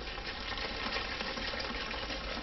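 Water sloshing inside a small lidded plastic container as it is shaken to mix dirt, glitter and beads into it. It makes a steady, soft swishing.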